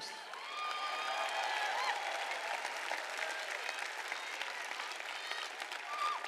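Audience applauding, a steady patter of clapping that builds about a second in and eases off slightly toward the end, with a few voices calling out among it.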